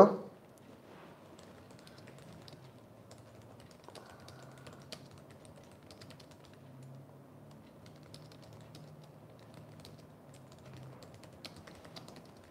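Faint typing on a computer keyboard: scattered light key clicks at an uneven pace.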